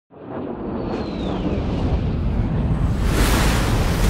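Jet flyover sound effect: a deep rumble that swells steadily louder, with a thin falling whistle about a second in and a rushing hiss peaking about three seconds in as the jets pass.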